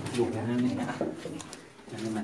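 A man speaking Thai in a low voice, trailing off toward the end.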